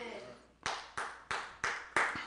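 Slow hand-clapping: five claps about a third of a second apart, starting about half a second in.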